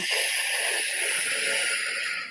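A woman's long, slow exhale through the mouth, a steady breathy hiss that fades near the end. It is the drawn-out out-breath of "5-10" calming breathing, where the exhale is kept longer than the inhale.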